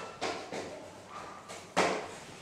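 Objects handled on a tiled lab bench: a few light knocks and taps, the loudest near the end.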